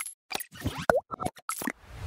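Cartoon-style sound effects for an animated logo: a quick series of short pops and clicks, with a brief rising boing about a second in.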